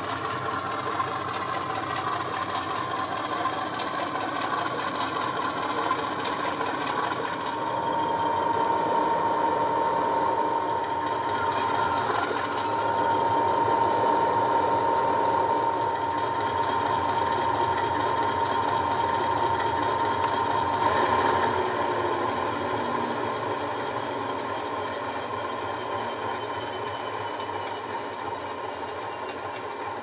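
OO gauge model diesel locomotive's ESU LokSound 5 DCC sound decoder playing a diesel engine through its speaker, mixed with the model's own running noise. The engine note rises about seven seconds in with a steady whine on top, then eases off toward the end as the locomotive draws to a stand.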